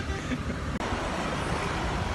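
Roadside traffic noise: a steady rumble of passing vehicles, with a brief dropout a little under a second in.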